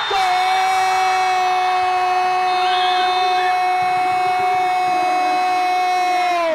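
A long, loud horn blast held at one steady pitch, typical of a hand-held air horn.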